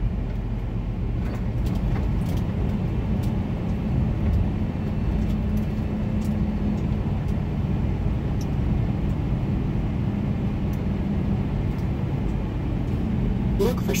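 Semi truck's diesel engine running steadily, with road noise, heard from inside the cab.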